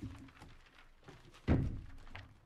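A dull thump of something knocked against the meeting table close to a table microphone, about one and a half seconds in, with a lighter knock at the start.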